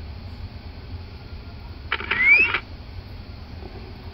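A short electronic rising chirp, about half a second long, from a handheld survey data collector as its offset-point storing routine finishes, over a steady low hum.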